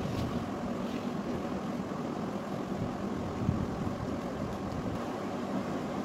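A hand mixing rice flour into milk in a large aluminium pot, with a steady, even wet swishing as the flour is worked through the liquid.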